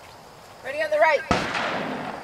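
A single rifle shot about a second and a half in, cracking sharply and trailing off in a short echo. A voice calls out briefly just before it.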